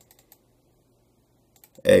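A few faint clicks at a computer, a small cluster at the start and a few more about a second and a half in, as the browser's address-bar text is selected. A man's voice starts near the end.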